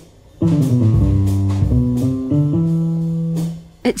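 A Soundbeam, an invisible sensor that turns hand movements into notes, sounding like a bass guitar: a short run of notes stepping up and down, ending on one held note that fades out.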